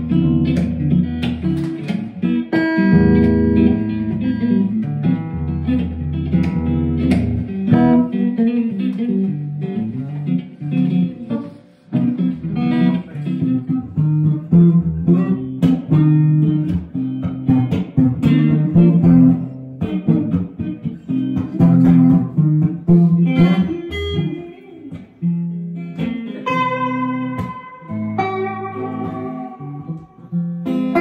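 Two electric guitars played together in a duet, mixing chords and low bass notes with higher single-note melody lines. The playing briefly drops away about twelve seconds in.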